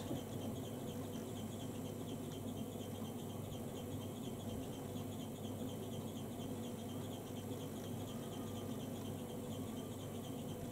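Steady low hum with a faint even hiss: room tone, with no distinct brush strokes standing out.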